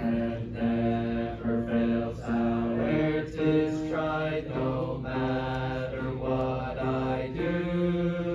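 A congregation singing a hymn together in parts, several voices holding chords that change about every half second, with a longer held note near the end.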